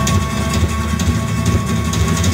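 Live rock band's amplified electric guitar and bass sounding a low, steady drone that is heavy in the bass, with a few held higher tones above it.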